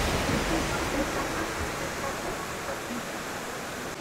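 Steady rush of turbulent river water through rapids, fading gradually.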